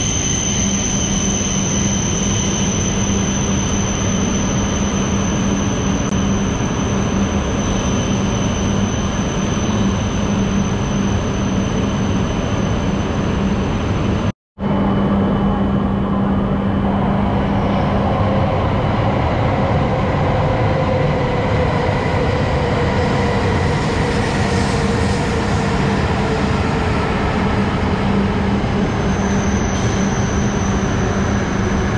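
E5-series Shinkansen train passing at speed close by, a loud steady rush of wheels and air. After a sudden brief cutout about halfway through, a Shinkansen train rolls slowly along a platform, its traction motors whining in gliding pitch over the rumble.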